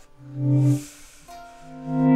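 Electric guitar playing two held notes: a short low one about half a second in, then a longer, higher one that starts past halfway and grows louder near the end.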